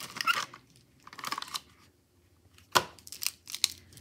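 Handling of a cardboard box of plastic gel pens: the pens slide out of the box and rattle and click against each other, with paper rustling. A sharp click a little under three seconds in is the loudest sound, followed by a few lighter clicks.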